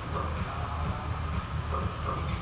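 Background music with a steady deep bass line.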